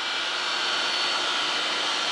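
Supra 618II surface grinder running, a steady whir from its spindle and spinning grinding wheel with a faint high whine above it.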